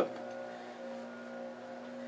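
Steady low hum of shop background noise, with a few faint steady tones and no knocks or clicks.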